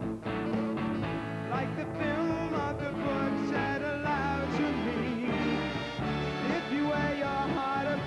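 Live band playing an intricate instrumental passage with electric guitar, saxophones and drums.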